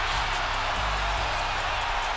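Arena crowd cheering loudly right after a dunk, a steady roar with music underneath.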